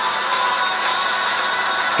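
A rock band recording of drum kit and electric guitars playing back from a screen's speakers, heard as a dense, steady, hissy wash with no clear notes.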